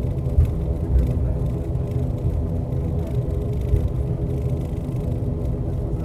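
Steady drone of an ATR turboprop airliner's engines and propellers heard from inside the cabin while taxiing, with a few low thumps.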